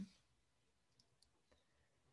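Near silence: room tone with a few faint clicks, about a second in and again about a second and a half in.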